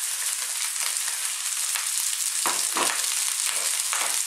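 Oil sizzling in a very hot wok as cold cooked rice goes in on top of frying garlic, ginger and onions, with a couple of short knocks about two and a half seconds in.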